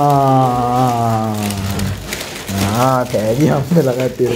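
A man's voice holding one long drawn-out vowel for about two seconds, then a shorter rising call followed by chatter.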